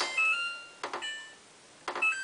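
Samsung WF8804RPA washing machine control panel beeping as the spin-speed button is pressed, three presses about a second apart. Each press gives a small click and a short electronic beep of a couple of notes as the spin setting steps down to 400 rpm.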